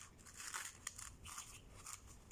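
Faint rustling of a white cloth being scrunched and twisted in the hands, in short scratchy bursts.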